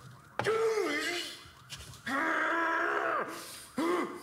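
A person's drawn-out wordless vocal sounds: a short bending call, then a longer held one about two seconds in.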